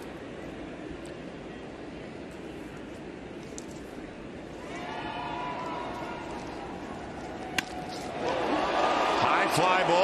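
Ballpark crowd noise, then a single sharp crack of a bat meeting a pitch about three-quarters of the way in. The crowd's cheering swells right after as the ball carries deep for a home run.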